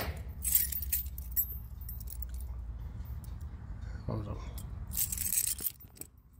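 A bunch of keys jangling in two short bursts, about half a second in and again about five seconds in, over a low steady rumble.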